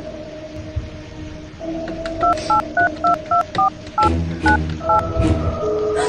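Touch-tone telephone being dialed: about nine short two-tone keypad beeps in quick succession, starting about two seconds in, over soft background music.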